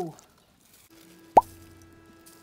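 A single plop about one and a half seconds in: one short blip that sweeps quickly up in pitch, followed by a faint steady ringing tone.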